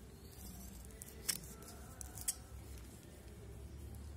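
Old rusty scissors snipping through a folded plastic carry bag: two sharp snips about a second apart.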